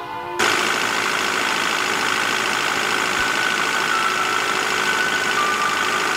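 Music cuts off about half a second in, giving way to a steady rushing of wind in a snowstorm.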